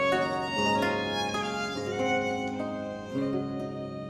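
Baroque violin playing a bowed melody over plucked notes from a 13-course baroque lute (Le Luth Doré Hagen model), in a slow duo. The notes change about every half second and the music grows gradually softer toward the end.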